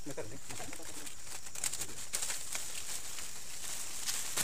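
Steady high-pitched insect drone in woodland, with a brief low murmur of a voice near the start.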